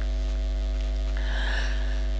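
Steady electrical mains hum from the microphone and sound-system wiring: a low buzz with a ladder of steady overtones. A faint higher tone joins about a second in.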